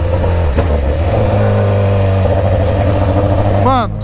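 BMW S1000RR's inline-four engine running loud at low road speed on light throttle, its note stepping up in pitch twice as the bike pulls, with wind rush over the rider's helmet microphone.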